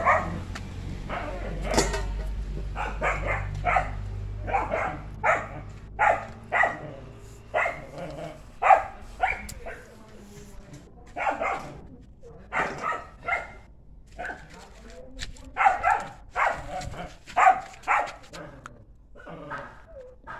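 A dog barking again and again, about one bark a second with short pauses between runs. A low rumble sits under the first few seconds.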